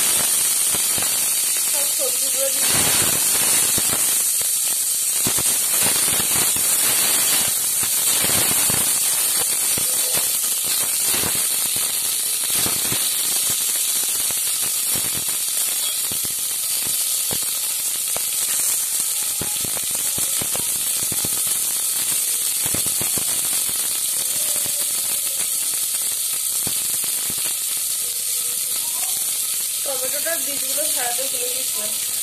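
Vegetables sizzling in hot mustard oil in a steel pressure cooker, with a metal slotted spoon clicking and scraping against the pot as they are stirred. The clatter is busiest in the first dozen seconds and sparser after.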